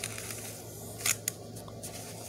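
Paper pages of a spiral-bound sketchbook being turned and handled, a crisp rustling with one sharp snap of paper about a second in.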